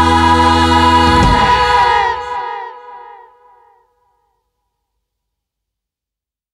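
A rock band's final held chord ending a song: the bass drops out about a second in and the remaining notes die away over the next two or three seconds, leaving silence.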